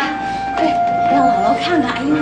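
Excited voices of family members greeting one another, over background music with a few long held notes.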